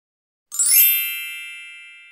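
A bright, shimmering chime struck once about half a second in: a sparkly high glitter at the onset over several ringing tones that fade slowly, a logo sound effect.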